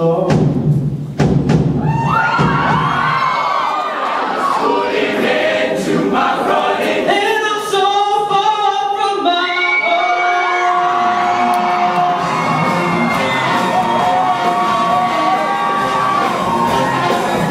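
Show choir singing, with the audience cheering and whooping over the first few seconds, then a solo voice singing held notes over the group's sustained chords.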